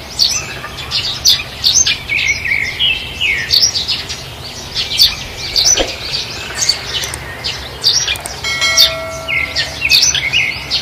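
Small birds chirping over and over, many short high calls overlapping. A short ringing tone with several pitches stacked together sounds just before the end.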